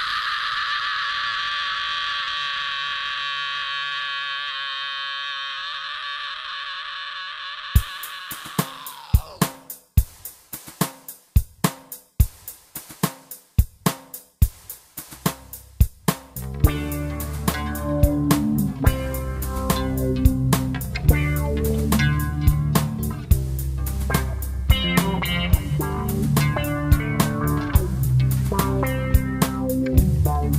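Instrumental break of a rap-metal song. A sustained chord slowly dies away over the first eight seconds, then sharp drum hits play alone, and about sixteen seconds in the full band comes in: bass, guitar riff and drum kit with a steady beat.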